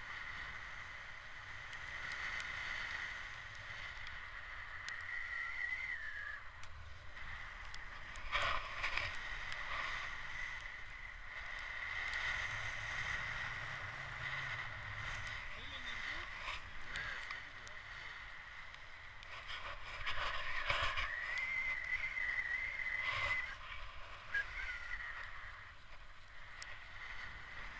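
Wind rushing over the camera microphone during a tandem paraglider flight, a low buffeting rumble with a few louder gusts, over a steady high whistling tone that wavers now and then.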